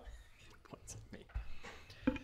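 Faint, quiet speech, barely above room tone, with a soft low bump about one and a half seconds in.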